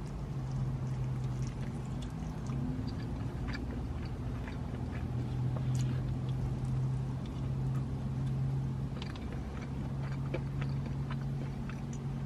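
A person biting and chewing a fried chicken drumstick, with faint scattered crunches and mouth sounds, over a steady low hum inside a car.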